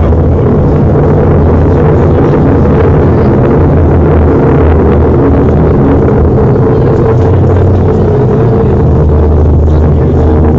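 A loud, steady low drone with a dense rumbling hum and held tones, unbroken throughout.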